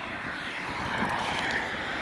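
Road traffic noise: a steady rush of passing vehicles' tyres and engines, swelling slightly about a second in as a vehicle goes by.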